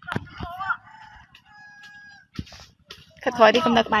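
A rooster crowing in the first half, followed by people talking near the end.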